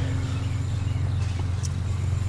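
Pickup truck engine idling, a steady low hum with a fast, even pulse, heard inside the cab.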